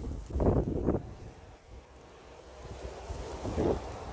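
Wind buffeting the phone's microphone in a snowstorm. It comes in two rushes, a strong one about half a second in and a shorter one near the end.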